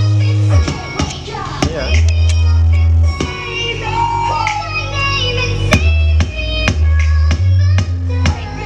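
Bass-heavy music played through a homemade amplifier into a woofer in a wooden box: long held bass notes, sharp drum hits and a melody line above. The amplifier's output stage combines Sanken and Toshiba power transistors, and with the Toshibas in, the mids and upper mids sound muted ('mendem').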